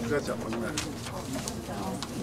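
Indistinct chatter of several people talking at once in a large meeting room, low voices overlapping, with a few faint clicks and knocks.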